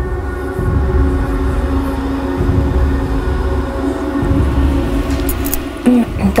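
Eerie background music: a sustained droning chord held over a low rumble that swells and fades every second or two.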